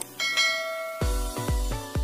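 A click, then a bright bell chime of several ringing tones that fades over about a second: the notification-bell sound effect of a subscribe animation. About halfway through, electronic music with a deep bass beat comes in.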